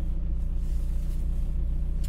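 Steady low rumble of a car, heard from inside the cabin.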